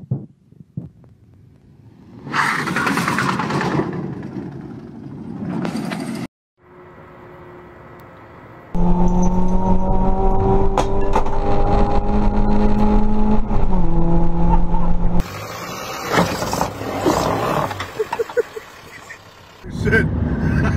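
Several short vehicle clips cut together. The loudest and longest, midway through, is a car engine heard from inside a race car's cabin, held at steady revs and then stepping slightly down in pitch.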